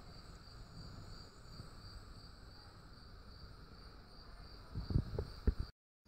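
A cricket chirping faintly in a steady, fast, even pulse over quiet room tone. About five seconds in come a few light knocks and clicks of metal bike parts being handled, then the sound cuts off abruptly.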